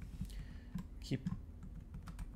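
A few light, scattered computer keyboard keystrokes. A short spoken word comes about a second in.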